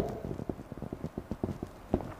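Marker pen writing Chinese characters on a whiteboard: a quick, irregular run of small taps and scratches as the strokes are drawn.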